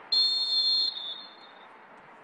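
Referee's whistle blown once, a single shrill blast of just under a second that fades out quickly. It stops play for a delay-of-game penalty.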